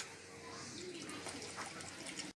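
Liquid coconut milk pouring from a carton into a pot of hot cooked peas: a faint, steady trickle.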